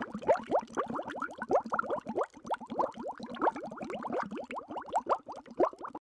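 Bubbling-water sound effect: a steady stream of quick plops, each a short upward-sliding bloop, several a second and irregular.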